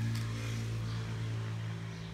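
A steady low hum with a few overtones, as of a motor or machine running in the background.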